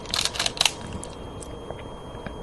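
Go stones clicking and clattering against each other as a hand sorts through a stone bowl: a quick flurry of sharp clicks in the first second.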